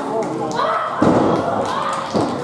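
A wrestler's body slammed down onto the pro-wrestling ring mat: one heavy thud about a second in, with spectators' voices calling out around it.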